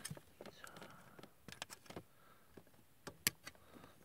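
Hobby nippers cutting a part off a Bandai plastic model kit's runner: a few faint clicks and handling noises, with the sharpest snip about three seconds in. The runner is of hard, stiff plastic.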